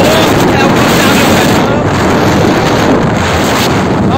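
Wind rushing steadily and loudly over an open-air microphone on a moving pickup truck, with the vehicle's road noise blended underneath.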